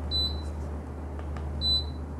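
Two short high-pitched electronic beeps, one just after the start and one near the end, over a low steady hum.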